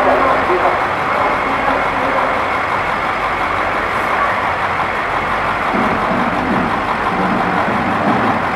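Heavy police trucks' engines running in a street, a steady dense rumble and hum, with voices murmuring in the background.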